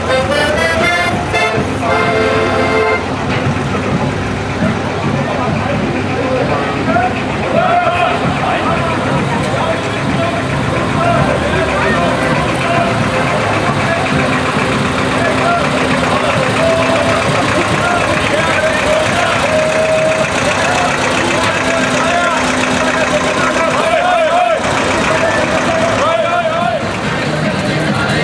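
An accordion plays held chords for the first few seconds, then old farm tractors run slowly past with their engines at a steady low idle, mixed with voices and chatter.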